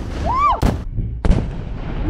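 Muzzle-loading guns fired into the air: two sharp shots about two thirds of a second apart, the second one doubled, with a short excited shout just before the first.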